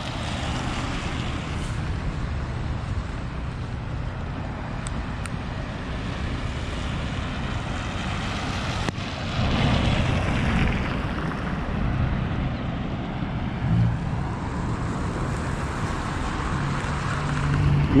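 Road traffic on a rain-wet street: cars passing with the hiss of tyres on the wet road, one passing louder about nine seconds in, and a low engine hum in the last few seconds.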